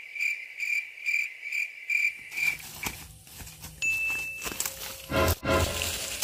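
Insect chirping in an even pulsed rhythm, about two or three chirps a second on one steady pitch, stopping a little over two seconds in. Rustling of leafy undergrowth follows, with a dull thump just after five seconds.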